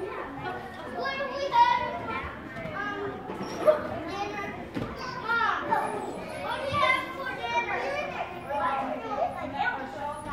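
Young children playing and calling out to one another, several high voices overlapping with no clear words, and a couple of louder cries in the first few seconds.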